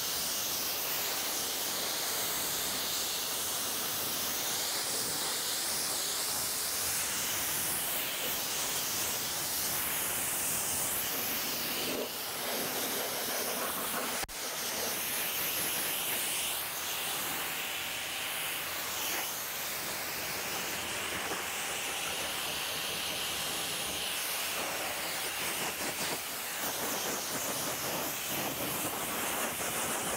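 Kränzle 1322 pressure washer spraying a steady hissing jet of water onto a car body as the shampoo is rinsed off. About halfway through the spray breaks briefly with a sharp click, then carries on.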